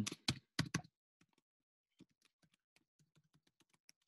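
Typing on a computer keyboard: a few louder key presses in the first second, then faint, irregular keystrokes.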